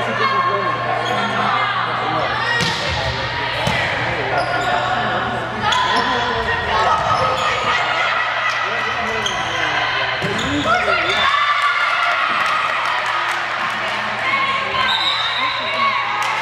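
Volleyball rally in a gymnasium: players and spectators call out and shout over each other, with a few sharp smacks of the ball being hit. A steady low hum runs underneath.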